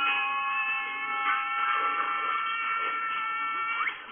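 Film soundtrack heard through a TV speaker: a held chord of several steady high tones. The lowest tone drops out a little past halfway, and the chord ends with a quick rising glide.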